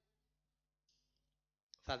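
Near silence during a pause in a man's speech, broken near the end by a brief click as he starts talking again.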